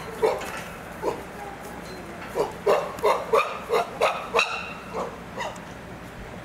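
Chimpanzee calling: a run of short, loud calls, about three a second, bunched in the middle.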